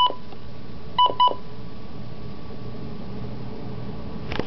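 Midland WR-100B weather radio giving short electronic key-press beeps: one right at the start and a quick pair about a second in, then a faint steady hum.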